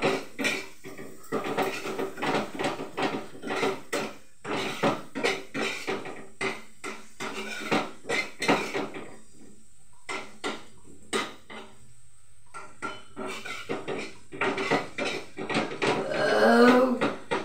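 Metal spatula stirring and scraping in a wok, giving quick runs of clinks and scrapes against the pan with a few short pauses.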